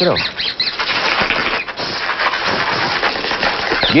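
A mobile phone ringing with a harsh, buzzy ringtone that starts about half a second in and carries on steadily.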